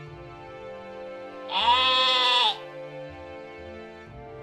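A llama gives a single loud bleating call about a second long, its pitch arching up and then falling away, over steady background music.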